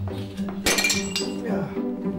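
A white ceramic mug swept off a table edge by a hand strikes with a loud clink and brief ringing a little over half a second in, over a film score of cello and bowed strings.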